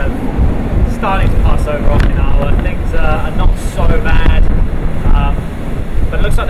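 Typhoon-force wind buffeting the microphone: a loud, continuous low rumble under a man's talking.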